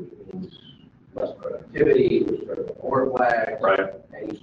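Speech only: a person talking, starting after a short pause about a second in.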